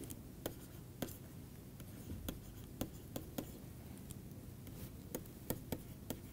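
Faint, irregular taps and scratches of a stylus writing out an equation, about two short ticks a second.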